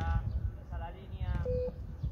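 A short electronic beep from a beep-test (Course Navette) recording, about one and a half seconds in, signalling the end of a shuttle run, with men's voices around it.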